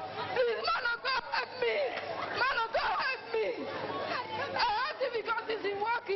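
Several voices speaking and calling out over one another, with no clear words, in a large hall.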